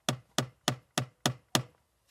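Finger tapping and pressing the loose end of a plastic door sill trim strip, six sharp taps about three a second that stop shortly before the end. The end of the strip is not properly glued down, as if its adhesive tape runs out before it.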